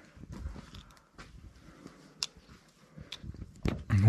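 Footsteps on stone rubble and debris: scattered, irregular small crunches and clicks, with one sharper click a little after two seconds.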